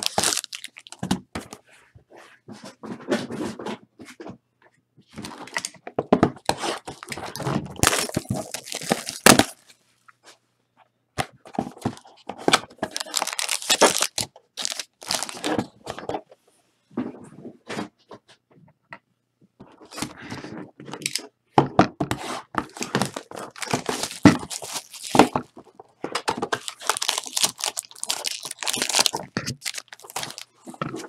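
Silver foil wrappers of Panini Playbook football card packs crinkling and tearing as they are handled and opened, in repeated bursts of a few seconds with short pauses, mixed with sharp clicks and knocks of the packs and boxes.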